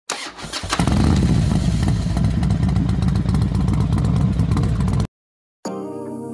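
Motorcycle engine being started: a brief crank, then it catches in under a second and runs with a low, pulsing note for about four seconds before cutting off abruptly. Music begins near the end.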